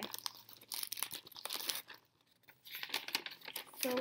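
Paper packaging crinkling and rustling as it is handled and unwrapped, in two spells with a short pause near the middle.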